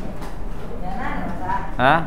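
Speech: a faint, drawn-out voice in the middle, then a man's voice loudly calling a name near the end, over a steady low hum.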